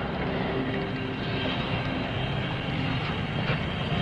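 Steady drone of airliner engines on an airport apron: an even, unbroken hum with a few faint steady tones.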